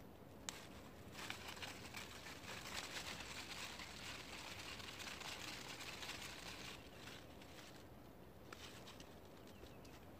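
Faint rustling and crackling of dry leafy stalks and loose soil as a Jerusalem artichoke plant is pulled up by hand, lasting about five seconds from a second in, with a single click just before.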